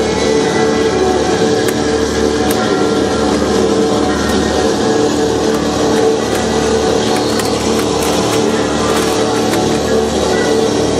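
Loud, dense experimental tape music from cassettes played through a mixer: a thick steady wall of noise with several held drone tones under it. Scattered sharp clicks and rattles cut through, more often in the second half.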